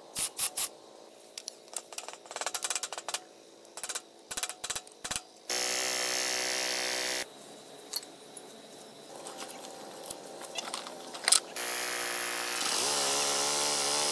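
Hand-tool clicks and metal knocks on a walk-behind tractor, with a power tool running for about two seconds midway. Near the end the tractor's engine runs, its pitch rising briefly as it revs.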